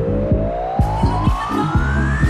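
Disco house music with a steady four-on-the-floor kick drum, about four beats a second, under a single tone that climbs steadily in pitch, a build-up riser. Hi-hats come in about a second in.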